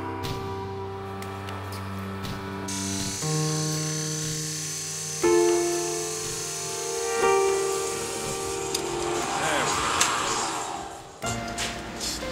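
Slow piano music with sustained chords that change every couple of seconds. Under it, from about three seconds in, a drill press runs with a steady high hiss until just before the end.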